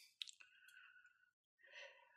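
Near silence: room tone, with one faint click just after the start.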